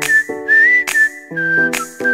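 Advertising jingle: a whistled melody over held backing chords, with sharp percussive hits about once a second. About two-thirds of the way through, the whistled tune drops to a lower held note.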